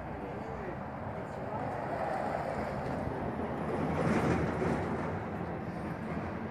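A vehicle passing on the road, its noise swelling to a peak about four seconds in and then easing, over faint voices.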